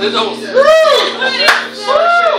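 A live band's last sustained chord dies away about half a second in, and audience clapping follows, with two rising-and-falling voice calls and one sharp click.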